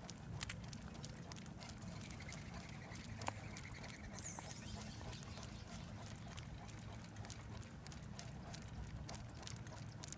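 Great Dane's paws and nails clicking on blacktop at a steady trot, over the low steady rumble of the dog sulky rolling along the road.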